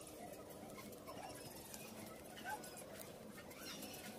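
Faint background noise with a few short, faint animal calls, the loudest about two and a half seconds in.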